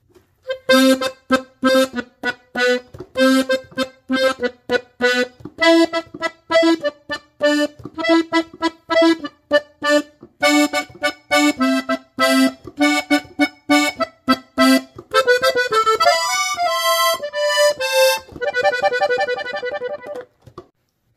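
Three-row diatonic button accordion in G playing a norteño intro at normal tempo: short, detached octave notes repeated in a steady rhythm. In the last five seconds it breaks into quicker runs of notes.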